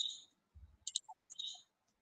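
Quiet, sharp, high-pitched clicks in quick succession, in two clusters about a second apart, with a brief low thump just over half a second in.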